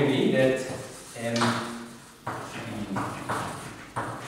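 Chalk writing on a blackboard: a series of short scratches and taps, about two a second, in the second half. Before them a man's voice murmurs briefly for the first second and a half or so.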